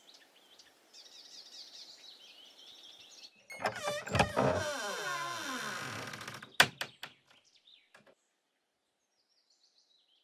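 Birds chirping faintly, then a wooden door creaking open in one long creak that slides down in pitch, ending in a sharp knock and a few light clicks.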